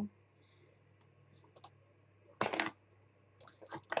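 Quiet handling, then a short clatter of plastic about two and a half seconds in and a few light clicks near the end: a clear acrylic stamp being picked up and set down on the craft mat.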